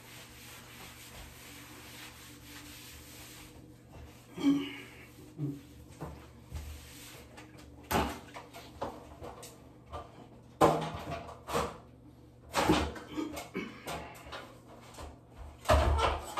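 A sponge rubbing on wet ceramic wall tile for the first few seconds, then a series of sharp knocks and clatters as equipment is handled. Near the end an aluminium step ladder being lifted and banging.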